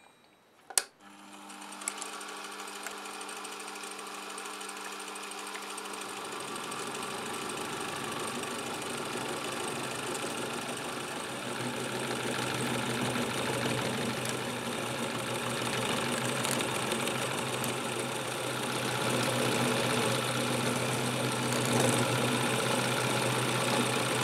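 A small milling machine's motor starts about a second in and runs steadily. From about six seconds an end mill is cutting a flat into a brass nut, adding a rough cutting noise that grows louder as the cut goes on.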